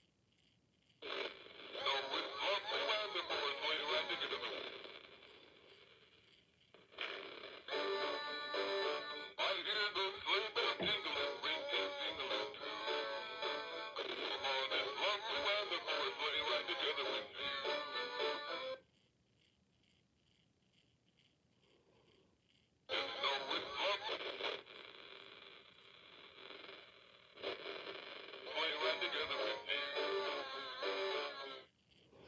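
An animated Santa Claus figure plays a song with singing through its small built-in speaker. The sound is tinny and thin, and it comes in several stretches, with a silent break of a few seconds about two-thirds of the way in.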